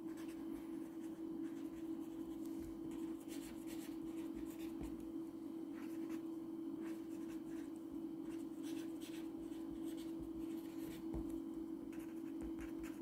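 Pen writing on paper on a clipboard: many short scratching strokes, over a steady low hum.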